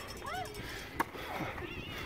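Faint voices across an outdoor football field, with a few short high calls that rise and fall in pitch, and one sharp click about a second in.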